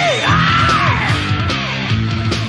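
Heavy metal band on a 1992 demo recording: distorted guitars, bass and drums playing loud and steady, with a high lead line rising and falling in long arcs over them.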